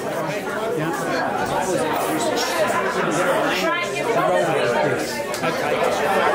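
Many people talking at once in a hall: overlapping, indistinct chatter with no single voice standing out.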